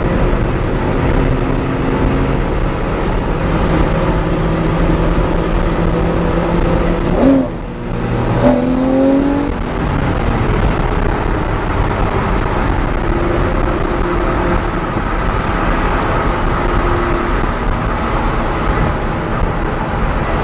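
Car engine and road noise heard from inside the cabin at highway speed. About seven seconds in the sound dips briefly, then the engine note climbs again.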